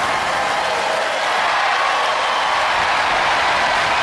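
Studio audience applauding and cheering, a steady, loud wash of crowd noise.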